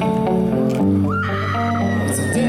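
Live rock band music recorded from the crowd on a handheld camera. Sustained notes are heard throughout, and about a second in a high note slides up and then holds.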